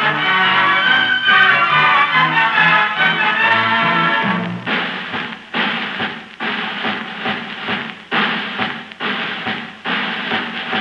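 Orchestra playing on an old broadcast recording: a full, sustained melody for the first half, then heavy drum strokes about every 0.8 seconds, each with a short orchestral chord.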